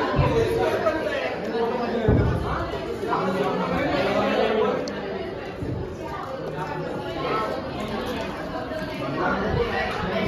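A group of young men talking over one another: overlapping, indistinct chatter.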